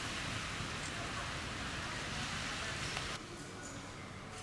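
Steady outdoor hiss, like wind or moving air, with a faint murmur of distant voices beneath it. It cuts off abruptly about three seconds in to a quieter indoor background.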